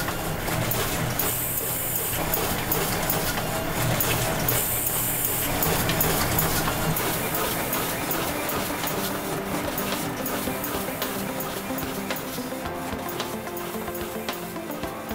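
Background music, with the Zip-A3E paper cutter/slitter running steadily underneath as it crosscuts and slits pull tab card sheets.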